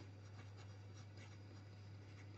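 Pen writing on squared paper: faint scratching strokes as words are written, over a steady low hum.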